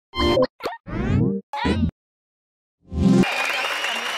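Cartoon-style plop and boing sound effects from an animated channel ident: four short pitched blips with sliding pitch in about two seconds. After a brief silence, a short musical chord sounds and studio audience applause begins about three seconds in.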